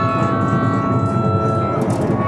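Mixed ensemble of winds, double bass and harps playing a free improvisation: long held high notes over a dense, restless low texture, one held note dropping out near the end as another carries on, with a short sharp click just before the end.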